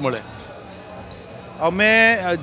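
A man speaking, broken by a pause of about a second and a half filled only by faint background noise before he speaks again.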